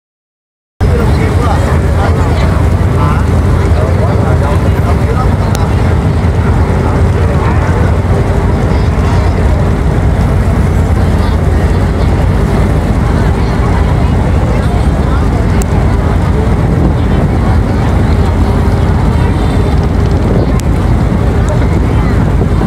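A boat's engine running steadily with a loud, low drone, heard from on board the moving boat, with people talking over it.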